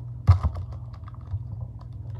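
Plastic baseball card pack wrapper torn open and crinkled by hand: a sharp rip about a third of a second in, then small scattered crackles.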